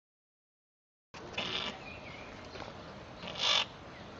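Dead silence for about a second, then the faint background hiss of an amateur video's own soundtrack. It has two brief noisy rustles in it, one soon after it starts and one near the end.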